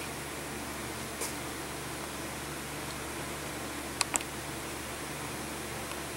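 Steady hiss and low hum of a running electric fan, with two faint clicks about four seconds in.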